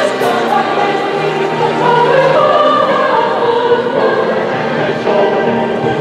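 Choir singing with an orchestra, several voices holding long notes, amplified through outdoor stage loudspeakers.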